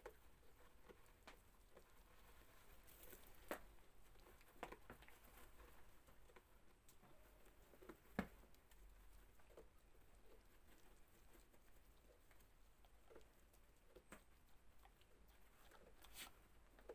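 Faint, scattered crunches and mouth clicks of a goat nibbling and licking a handful of fresh snow, with one sharper click about eight seconds in.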